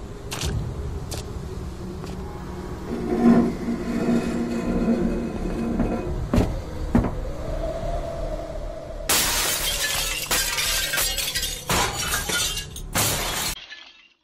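Tense film sound design: a low rumble with a few scattered knocks, then, about nine seconds in, a loud burst of shattering glass lasting several seconds that cuts off abruptly.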